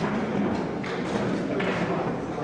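Two short wooden knocks of chess pieces set down on the board and clock buttons pressed in a fast chess game, over a steady murmur of voices.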